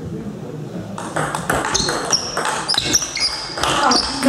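Table tennis rally: the plastic ball clicking off the bats and the table in quick succession, starting about a second in, with shoes squeaking on the sports hall floor.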